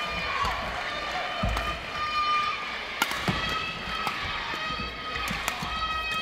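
Badminton doubles rally in an indoor hall: sharp smacks of rackets on the shuttlecock and court shoes squeaking, the hits coming about three seconds in and again after five seconds, over the voices of a crowd.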